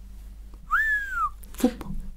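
A person whistles one short note that rises quickly and then slides slowly down, about half a second long, with a short 'fu' exhalation just after.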